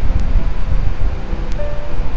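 Steady low rumble with faint background music, and two light clicks, one just after the start and one about a second and a half in.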